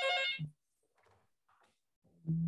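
A short electronic notification chime of a few steady tones, lasting about half a second, followed by near silence.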